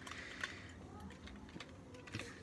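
Faint, scattered small clicks of the plastic parts of a transforming robot figure being turned and moved in the hands.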